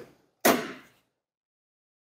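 Two knocks: a short one at the start, then a louder thump about half a second in that dies away quickly, after which the sound cuts out.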